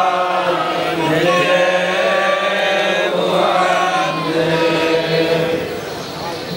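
A group of voices chanting devotional verses in unison, on sustained recitation tones, dropping a little in loudness near the end.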